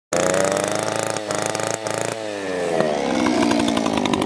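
Gas chainsaw engine running at high revs, its pitch dropping and wavering about two seconds in as the revs fall.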